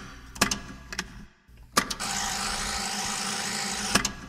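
A few sharp knocks, then a steady hiss of about two seconds that fades out just after the end: sampled sound effects between or inside tracks of a vaporwave album, with little or no music.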